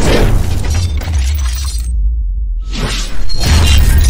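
Logo-intro sound design: a heavy bass drone under sweeping, crashing noise hits. Near the middle the high end drops out briefly, leaving only the bass, and a loud hit comes back just after three seconds.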